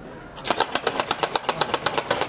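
A rapid, even run of sharp cracks, about nine a second, starting abruptly about half a second in.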